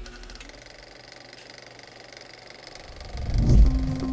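Title-sequence sound effect: a faint shimmering hiss as the music fades out, then a low whoosh that swells into a deep hit about three and a half seconds in.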